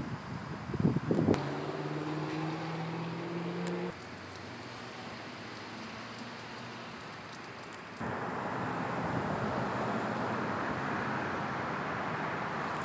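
Wind buffeting the microphone for about the first second, then a car engine's steady hum, rising slightly in pitch, until about four seconds in. After that, steady outdoor noise that drops abruptly and rises again about eight seconds in.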